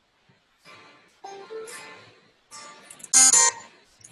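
Electric guitar strummed: a handful of separate chords, each ringing briefly, the loudest about three seconds in.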